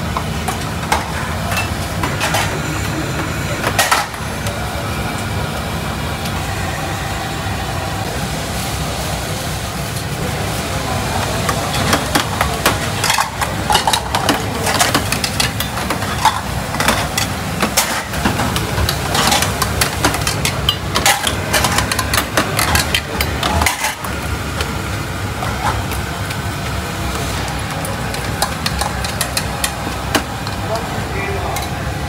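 Noodle stall kitchen at work: a steady low rumble from the boiler and cooking equipment, with frequent clinks and knocks of a metal ladle and bowls, busiest through the middle.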